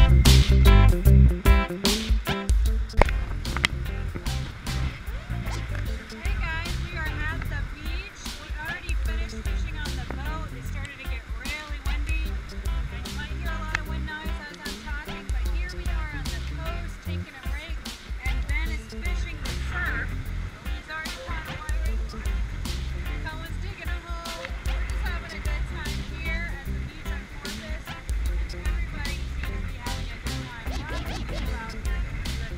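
Background music with a steady bass line. A woman's voice is heard at times beneath it.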